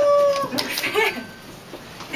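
A steady, held tone with one overtone, drooping slightly in pitch, cuts off about half a second in. It is followed by a brief voice and a quieter background.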